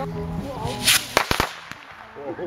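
Backyard consumer firework going off: a short hissing whoosh about a second in as a shot launches skyward, then a quick run of four sharp pops.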